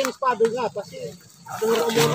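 Men talking, with a short pause about halfway through.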